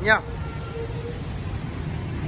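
Steady low background rumble, without any distinct event.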